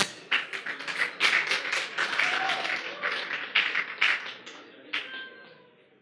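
Audience applauding in a hall: dense clapping that thins out and dies away near the end.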